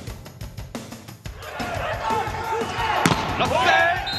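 Volleyball rally: a sharp smack of the ball being hit about three seconds in, with players shouting on court over arena music with a steady beat.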